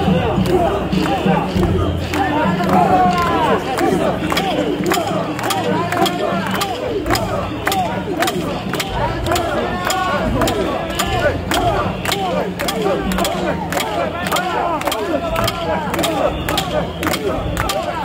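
Crowd of mikoshi bearers shouting their carrying chant, many overlapping voices. A steady run of sharp clacks, about two to three a second, runs through it.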